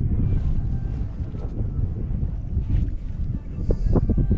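Wind buffeting the camera's microphone: a loud, low, ragged rumble, with a couple of small knocks near the end.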